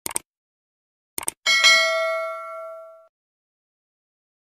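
Subscribe-animation sound effect: two quick mouse clicks, two more about a second later, then a notification bell ding that rings out and fades over about a second and a half.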